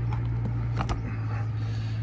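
Cover of a narrowboat's Morse control lever being pulled off by hand, with a short click a little under a second in, over a steady low hum.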